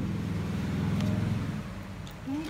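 Cup sealing machine's electric motor running with a steady low hum, cutting off about one and a half seconds in, with a light click about a second in.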